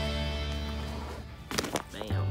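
Background music with sustained notes that fade down, then a brief burst of sound near the end as the track gives way to the next.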